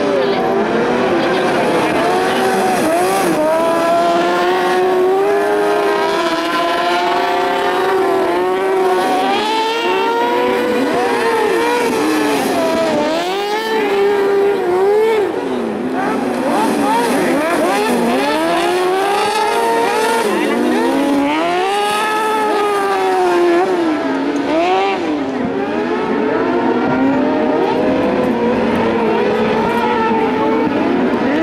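Carcross buggies racing, their motorcycle engines revving high, the pitch climbing through each gear and dropping as they shift and lift for corners. More than one engine is heard at once, their pitches crossing.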